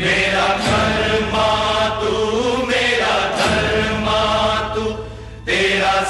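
News channel's ident jingle: chanted vocal music over a steady low drone. It dips briefly near the end, then starts again.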